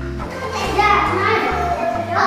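Children's voices chattering and playing over background music with a bass line that moves in short even steps.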